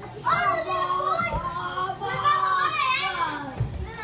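Children's voices in a play area: long, high-pitched calls held for a second or more at a time. There is a dull thump about a second and a half in and another near the end.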